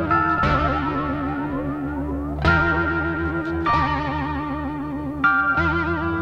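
Psychedelic rock instrumental: an effects-laden electric guitar with echo and distortion plays over a programmed beat. Its sustained notes waver and warble in pitch, with rising slides in the first couple of seconds and new notes struck every second or two.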